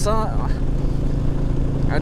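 Cruiser motorcycle running steadily at road speed, heard from on the bike: an even low engine drone with wind and road noise.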